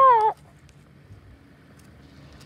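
A high-pitched voice drawing out the word "up", cut off about a third of a second in, followed by faint, steady outdoor background.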